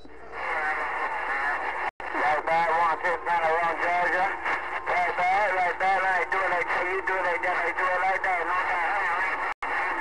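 A distant station's voice coming in over a Galaxy radio, narrow and thin, buried in static so the words are hard to make out. The signal cuts out completely for an instant twice, about two seconds in and near the end.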